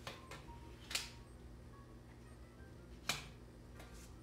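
Tarot cards being shuffled and drawn by hand: two sharp card snaps, about a second in and again just after three seconds, with a few softer ticks, over a faint steady low hum.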